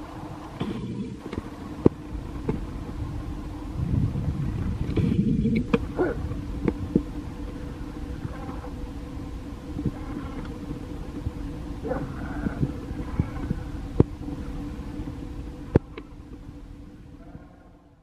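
Passenger express train running away down the track: a steady rumble of coach wheels on the rails with occasional sharp clicks, fading away near the end.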